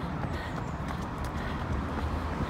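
A runner's footsteps on paving slabs in a steady rhythm while running uphill, over a low rumble.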